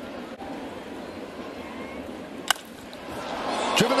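A baseball cracking off the end of a wooden bat about two-thirds of the way in, over a steady stadium crowd murmur. The crowd noise swells just after the hit.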